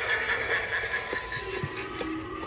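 Pirate skeleton animatronic playing its sound-effect track through its small built-in speaker: a steady, noisy wash with a few faint held tones.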